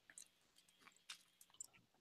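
Near silence, with two faint brief clicks about a second in and near the end.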